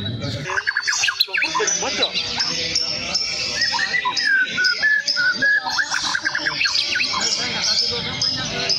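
White-rumped shama (murai batu) in full song: a fast, varied stream of chattering notes and high whistles, with a drawn-out whistle sliding down in pitch in the middle.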